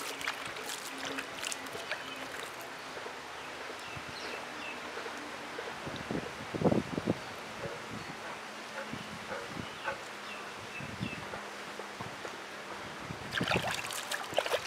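Water dripping and splashing as something soaked is dipped in a bucket and wrung out by hand, with small wet clicks and one louder splash or knock about halfway through.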